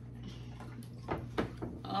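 Soda poured from a plastic bottle into a plastic cup, faint over a steady low hum, with a couple of short sharp sounds about a second in and a voice starting near the end.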